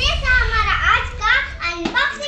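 A young girl speaking in a high child's voice.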